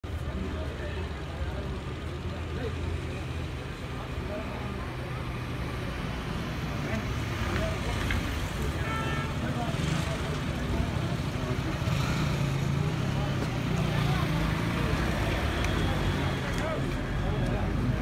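Town street traffic: car and van engines running past, with indistinct voices of people on the street in the background.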